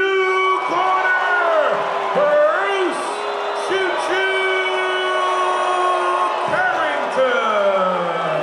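Boxing ring announcer's voice over the arena PA, stretching out the winner's name in long held syllables that glide up and down in pitch.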